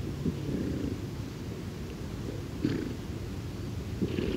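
New Forest pony close to the microphone, giving low, rough snuffling breaths, with a few sharper sounds, the loudest about two and a half seconds in.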